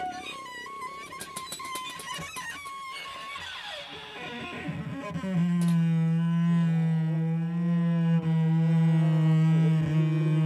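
Free-improvised trombone and bowed cello duo: a high wavering line with a quick run of sharp clicks, a breathy hiss, then a loud sustained low note that enters about five seconds in and holds steady.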